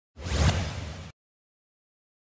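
A brief rush of noise with a low rumble under it, swelling to its loudest about half a second in and then cutting off abruptly just after a second.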